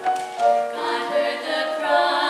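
Piano playing held chords, then three women's voices come in singing together less than a second in, with the piano carrying on beneath them.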